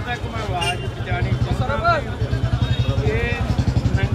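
An engine running nearby with a low, fast, even throb, under the voices and calls of a large crowd.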